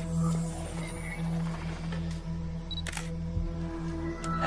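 Steady background film score with camera shutter clicks, one near the start and another about three seconds in.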